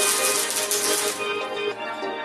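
Welding arc crackling and sizzling on car-body sheet steel, stopping about a second and a half in, under background music.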